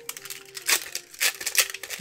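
Foil booster-pack wrapper crinkling and tearing open, a run of sharp crackles, loudest at about two-thirds of a second and just past a second.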